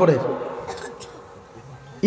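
A man's voice finishes a word through a PA system at the start, and its echo dies away over about a second. Then comes faint background noise with a thin steady hum.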